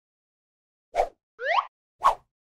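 Cartoon sound effects: a short plop about a second in, then a quick rising pitched sweep, then another plop at the end as the new picture pops in.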